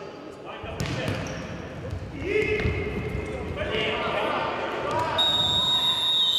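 Futsal play in a sports hall: footfalls and the ball thudding on the court floor, with players shouting. About five seconds in, a referee's whistle starts a long steady blast, stopping play for a foul.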